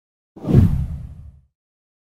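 A whoosh transition sound effect with a deep low rumble. It starts about a third of a second in, swells quickly and fades away by about a second and a half.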